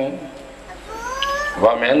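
A man's chanting voice, amplified through a microphone, breaks off at a phrase end; in the pause a short, high cry rises in pitch about a second in, and the chant starts again near the end.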